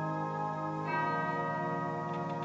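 Organ playing sustained chords over a held low bass note, with a change of chord about a second in.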